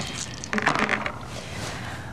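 A few irregular clicks and knocks from a board game being played on a tabletop, followed by a faint rustling hiss.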